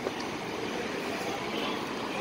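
Steady low rumble of idling fire trucks mixed with street noise.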